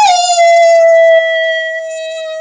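A man howling in imitation of a wolf: one long, loud howl held steady at a single pitch.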